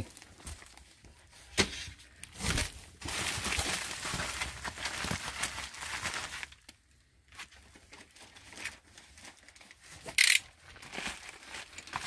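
Plastic packaging crinkling as a poly mailer bag is handled, with a few light knocks. Near the end comes a short, sharp rip as a box cutter is stabbed into the plastic bag.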